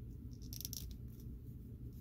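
Faint light clicks and rustles of a hand-held plastic action figure being handled and posed, a short cluster about half a second in, over a low steady hum.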